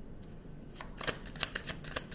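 A deck of oracle cards being shuffled by hand: after a short hush, a quick run of crisp card flicks and snaps starts a little under a second in and keeps going.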